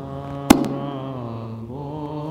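Soft liturgical chanting: a male voice holding a low chanted note quietly in a Coptic litany, broken about half a second in by a single sharp knock.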